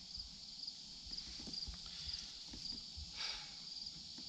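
Crickets chirping steadily in a high, evenly pulsing trill, with scattered soft knocks and a brief rustle about three seconds in as an ear of corn is picked up and handled.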